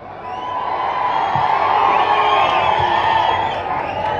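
Large crowd cheering and shouting, swelling over the first second and staying loud.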